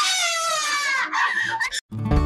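A woman screaming in distress: one long high scream lasting about a second, then shorter cries that cut off suddenly near the end. Guitar music starts right after.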